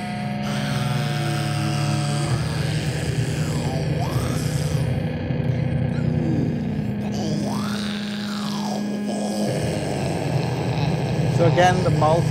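Music with sustained low tones from a recorded stage performance, under a woman's amplified voice through a handheld microphone that swoops up and down in pitch. The low tones stop shortly before speech begins near the end.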